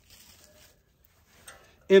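A quiet pause with a faint hiss and one soft click about one and a half seconds in, then a man's voice starts near the end.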